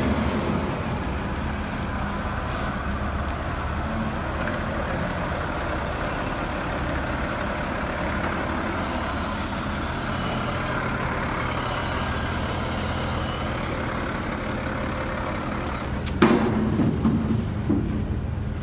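Diesel engine of a wheel loader running steadily as its forks lift a wrecked car onto a trailer, with a hiss for several seconds in the middle. A single sharp knock comes near the end.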